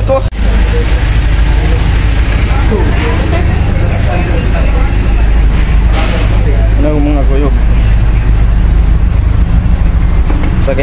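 A loud, steady low rumble, with people talking around it at times.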